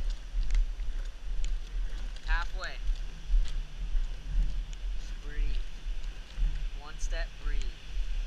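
Low, pulsing rumble of wind buffeting a body-worn camera microphone while a rescue dummy in turnout gear is dragged backward over asphalt, with faint shuffling and scraping. Short shouted calls from a distance come three times.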